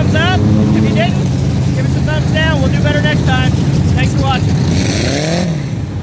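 Several dirt-track race car engines idling and running slowly in a dense, uneven low drone. About five seconds in, one engine revs up with a rising pitch.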